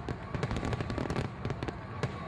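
Fireworks crackling with a rapid run of sharp pops, a sound effect for an animated fireworks display.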